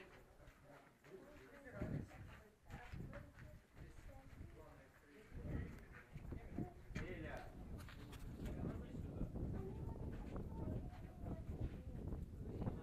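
Irregular low thumps and rumbling from a handheld camera being carried along, with footsteps on stone, busier in the second half.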